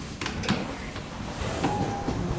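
Manual swing hall door of an old Otis elevator unlatched by its brass knob and pulled open: two sharp latch clicks, then the door swinging, with a brief squeak near the end.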